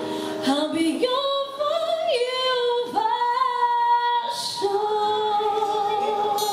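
A woman singing a country song live, holding long notes that slide between pitches, with acoustic guitar accompaniment.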